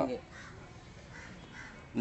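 A man's word trails off at the start, then a lull in which a few faint, short bird calls are heard in the outdoor background.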